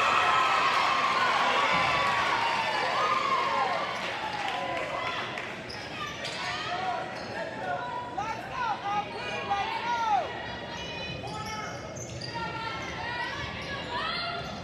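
Basketball game: sneakers squeaking on the hardwood court and a ball being dribbled, over crowd voices in a large gym. The crowd is loudest in the first few seconds, then drops back so the squeaks stand out.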